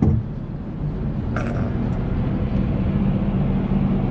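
Steady low engine hum of traffic heard from inside a car's cabin, growing gradually louder as a box truck's cab draws alongside the driver's window.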